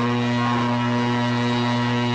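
A held note rings out of the rock band's amplified guitar rig as one steady, low humming drone, with no drum hits.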